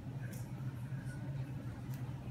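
A steady low hum, with faint brief rustles about a third of a second in and again near the end.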